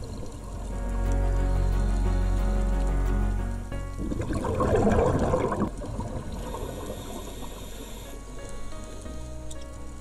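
Background music with steady tones, with a loud burst of bubbling about four seconds in that lasts under two seconds: a scuba diver's exhaled breath bubbling out of the regulator underwater.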